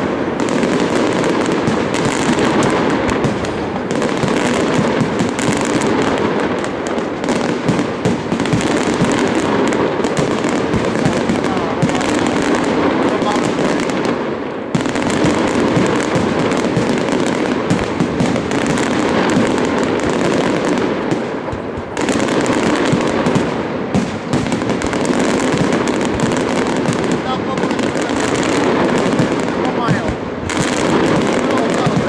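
Aerial firework shells bursting in rapid, overlapping succession with continuous crackling. The dense barrage eases briefly about halfway through and again about two-thirds of the way in.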